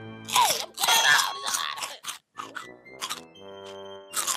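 Cartoon slapstick sound effects: a short grunt, then a quick run of crunching, smacking hits over background music. The music settles into held notes near the end.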